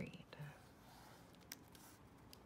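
Near silence: room tone, with the tail of a spoken word at the very start and one faint click about one and a half seconds in.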